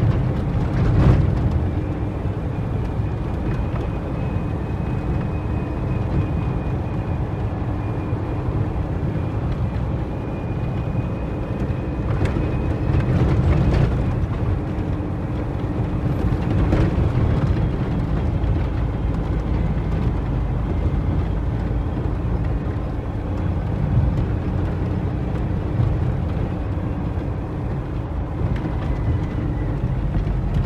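International 9400 heavy truck's diesel engine and drivetrain, heard from inside the cab while driving on a dirt road: a steady low rumble with a faint steady whine, and a few short knocks about a second in, around halfway, and near the end.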